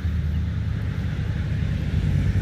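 A steady low rumble without speech.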